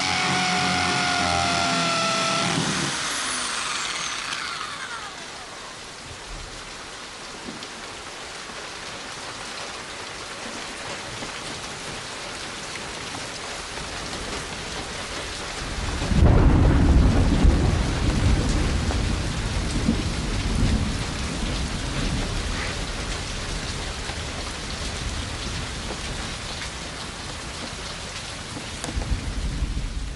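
An electric drill whines for the first two or three seconds and then winds down, giving way to steady rain. About sixteen seconds in, a loud low rumble of thunder rolls in and fades over several seconds while the rain goes on.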